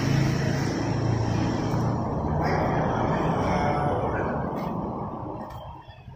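An engine running steadily with a low hum, fading away over the last two seconds.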